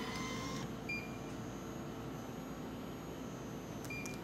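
Drink vending machine's bill acceptor finishing drawing in a 1000-yen note with a brief mechanical whir, then a short high electronic beep about a second in as the credit registers. A steady low machine hum runs under it, and a second short beep comes near the end as a lit selection button is pressed.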